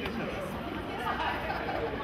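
Indistinct chatter of several people talking in a large hall, no single voice clear, over a steady low background hum.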